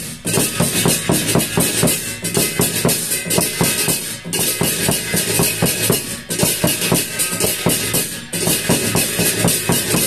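Fast, steady drumming with a bright jingling metallic layer over it, broken by short pauses about every two seconds.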